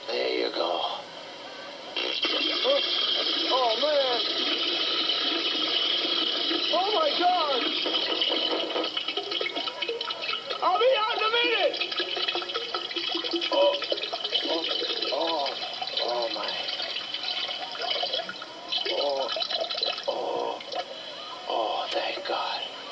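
A long, steady stream of liquid splashing: a comically prolonged pee. It starts suddenly about two seconds in and keeps going without a break. A man's voice makes wordless sounds over it.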